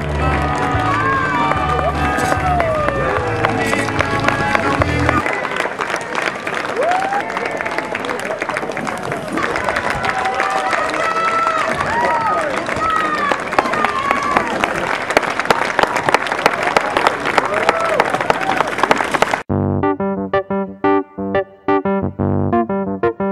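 Roadside crowd cheering and clapping, with music underneath for the first few seconds. A few seconds before the end it cuts abruptly to plain electric piano music.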